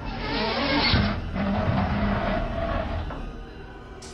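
Sound effect of a heavy sealed door being pushed open by hand: a noisy mechanical rush with a low thud about a second in, then fading over the next two seconds, over background music.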